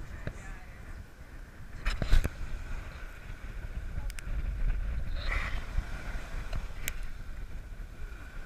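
Wind buffeting the camera microphone over surf washing up the beach, with a cluster of sharp knocks about two seconds in and a few lighter clicks later.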